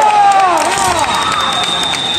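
Kendo fencers' kiai, drawn-out shouts from several voices that overlap and fall in pitch, against crowd noise with scattered claps. A thin high steady tone comes in about halfway.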